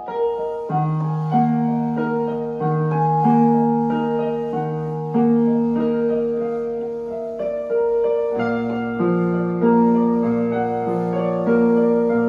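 Portable electronic keyboard played in a piano voice: a slow, gentle melody over held low notes that change every one to two seconds, the bass dropping lower about eight seconds in.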